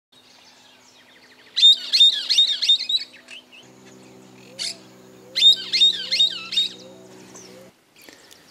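Small songbird calling in two bouts of rapid, sharp, high notes, about four a second, with a faint low steady hum beneath.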